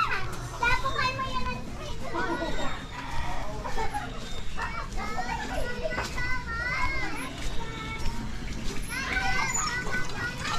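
Children playing in the open, high voices calling and chattering over one another without clear words.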